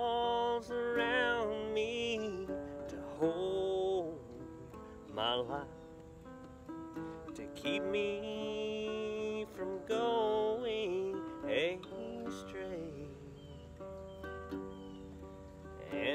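A man sings a slow country song over his own strummed small acoustic guitar. The sung phrases drop out twice, around five to seven seconds in and over the last few seconds, leaving the guitar alone.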